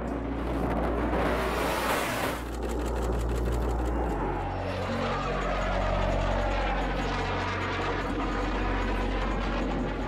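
Fighter jet roar as the jet passes: a loud rush in the first two seconds or so, then a roar that sweeps slowly in pitch as it goes by. Low sustained music notes run underneath.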